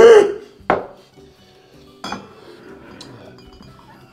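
Glass and a beer can clinking together: a short laugh right at the start, then a sharp clink under a second in, another about two seconds in and a fainter one near three seconds.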